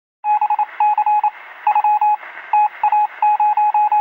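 Morse code: a single steady beep tone keyed on and off in short and longer pulses, over a thin band of hiss like a radio signal, cutting off suddenly at the end.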